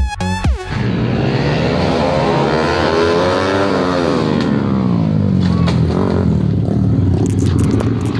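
A short burst of electronic dance music cuts off, then motorcycle engines run under load, rising in pitch to a peak near the middle and falling away again. A few sharp clicks come near the end.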